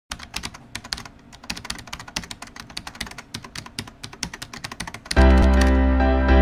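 Rapid, irregular keyboard typing clicks, several a second. About five seconds in, loud music with held chords starts suddenly.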